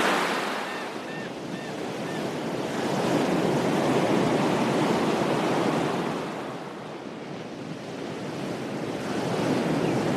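Small ocean waves breaking and washing up on a beach, the surf rising and falling with each wave: loud in the middle and again near the end. A few faint, short bird chirps in the first two seconds.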